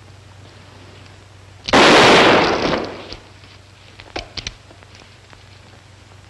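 A single revolver gunshot about two seconds in, very loud, with a long reverberating tail that dies away over about a second, followed by a few short clicks about two seconds later.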